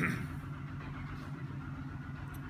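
Steady low engine hum from construction machinery outside, running evenly without change.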